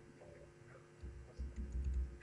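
Faint taps and clicks on a laptop keyboard while a slideshow is being brought up, with some low bumps in the second half.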